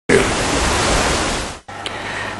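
A loud, even burst of hiss-like noise that lasts about a second and a half and then cuts off suddenly, leaving only a faint low hum.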